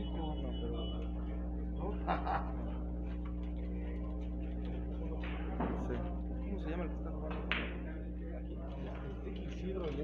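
Carom billiard balls struck by the cue and clicking against each other during a shot, a few sharp clicks in the second half, over a steady hum.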